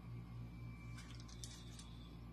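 Faint scraping of a metal spoon spreading butter onto a slice of baguette, a few short strokes about a second in, over a steady low hum.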